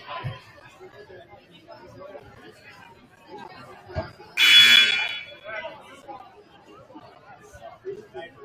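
Gymnasium scoreboard horn sounds once, a loud buzzy blast of just under a second about halfway through, over steady crowd chatter. The horn marks the end of the break, with the game clock reset to 8:00 for the fourth quarter.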